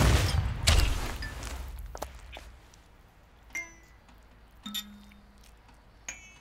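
Two heavy booming impacts, the first right at the start and the second under a second later, their rumble fading away. A few faint clicks and short high pings follow.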